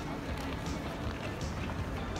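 Footsteps at a walking pace on a paved pedestrian street, over the steady hum of a busy shopping street with voices of passers-by.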